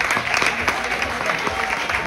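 Audience applause: many hands clapping at once in a dense, steady patter, with a few voices from the crowd.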